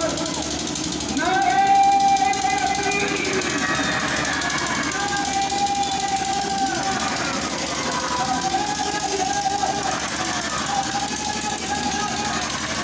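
A voice chanting in long held notes, in about four phrases of one to two seconds each, over steady street and crowd noise.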